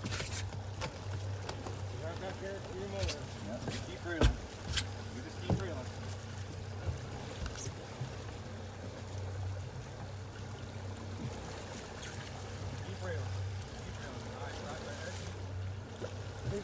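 A boat's outboard motor running steadily underway, a low hum, with a few sharp knocks about 4 and 5 seconds in.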